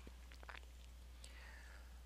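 Near silence: a pause in the narration with faint room tone, a steady low hum and a few faint ticks.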